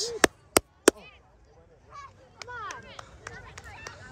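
Three quick, sharp hand claps close to the microphone, followed by faint shouting from young players out on the field.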